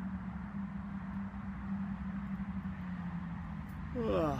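A steady low mechanical hum at one constant pitch over a low rumble.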